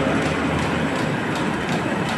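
CHM-1400 paper roll sheeter running steadily while sheeting four rolls of 65 gsm offset paper at once: a dense, continuous mechanical din with a faint regular ticking of about three a second.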